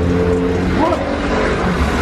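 Motor vehicle engine in street traffic, passing close with a steady drone that fades near the end, over a low rumble.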